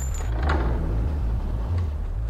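A deep, steady low rumble, with a brief swell of hiss about half a second in.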